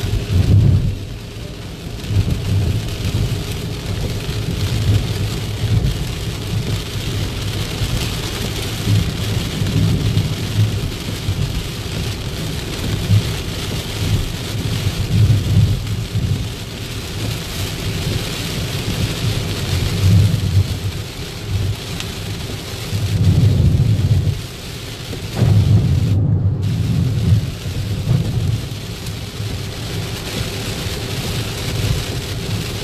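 Heavy cloudburst rain drumming on a moving car's windscreen and roof, heard from inside the cabin as a steady loud hiss. Under it runs a deep rumble that swells and fades every few seconds.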